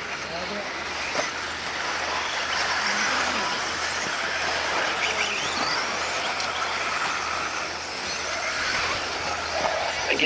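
Radio-controlled off-road buggies racing on a dirt track: a steady hiss of motors and tyres on dirt, with a few faint rising whines as cars accelerate.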